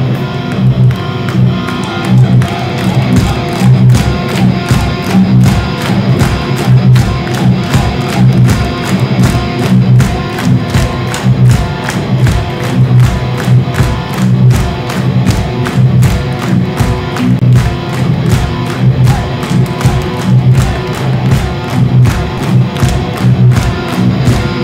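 Progressive metal band playing live with no singing: distorted electric guitars, bass, keyboards and drums. The drums settle into a fast, even run of hits about two seconds in.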